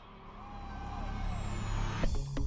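Electronic music build-up, a riser: a low rumble swelling steadily louder, with a thin high tone gliding slowly downward.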